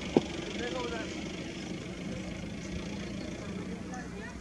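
Faint talking of people in the background over a steady low hum, with one short sharp click about a quarter second in.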